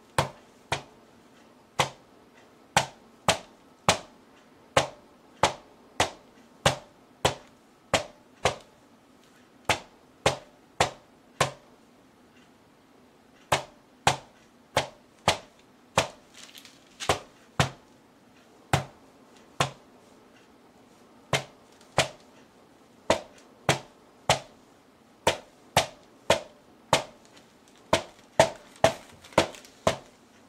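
A rubber mallet repeatedly striking wet acrylic paint on a canvas panel laid flat on a table: about forty sharp smacks at roughly one to two a second, with a few short pauses between runs.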